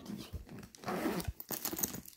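A mini backpack being handled and turned over in the hands: irregular rustling and scraping of the bag's material, loudest about a second in.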